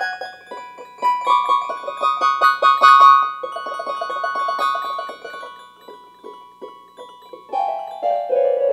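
Instrumental keyboard music: held high notes over a fast run of short, repeated notes, which thin out and quieten about two-thirds of the way through. A new chord enters near the end.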